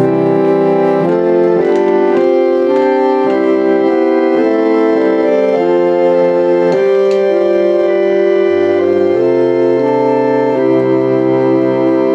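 Suitcase pump organ, a foot-pumped portable reed organ, playing slow sustained chords that change about once a second, with its knee levers untouched so only the basic set of reeds sounds. A lower bass note joins in the last few seconds.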